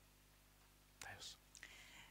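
Near silence: room tone with a faint steady electrical hum. About a second in, a short breathy noise close to a microphone, with faint hiss near the end.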